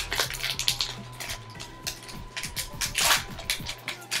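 Foil wrapper of a Pokémon booster pack crinkling as it is handled, a run of quick crackles with a louder rustle about three seconds in.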